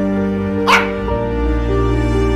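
Background music with held notes, cut once, under a second in, by a single short dog yelp that rises in pitch and is the loudest sound.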